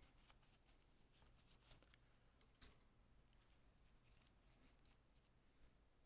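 Near silence: room tone with a low steady hum and scattered faint light ticks, a little stronger about one and a half and two and a half seconds in.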